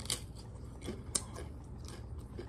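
Close-up chewing of a bite of crisp tostada topped with shrimp aguachile: a few scattered sharp clicks and crackles, the loudest a little past a second in.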